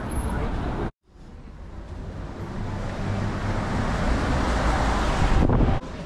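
City street traffic noise with wind on the microphone, building gradually to its loudest just before it cuts off near the end. It breaks off briefly about a second in.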